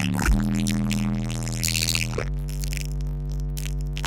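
Held low electronic synth-bass notes over the concert sound system, with no beat: a steady deep tone that shifts to a new note just after the start and again about two seconds in.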